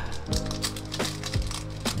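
Foil booster-pack wrapper crinkling and tearing in the hands, with scattered short crackles, over steady background music.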